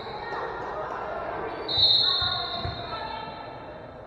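A referee's whistle blows one long, steady note starting a little under two seconds in, the signal that the server may serve, over voices calling out in the gym. A few low thuds of the volleyball being bounced on the hardwood floor fall around the whistle.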